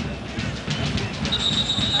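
Referee's whistle blown once, a steady high-pitched note just under a second long that starts past the middle, signalling the free kick to be taken after a booking. Steady stadium crowd noise runs underneath.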